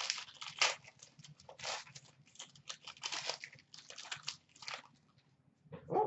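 Foil wrapper of a hockey card pack crinkling and rustling in the hands as the pack is opened, in an irregular run of short crackles that stops about five seconds in.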